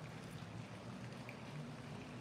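Quiet room tone: a faint, steady low hum under soft hiss.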